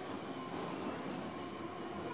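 A felt duster wiping across a whiteboard, over a steady background noise.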